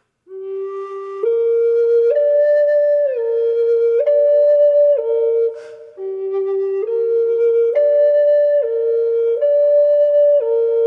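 G minor Native American flute played slowly: held notes of about a second each, stepping up and down among three pitches as two phrases that each spell out a three-note chord. A short breath is taken between the phrases, about halfway through.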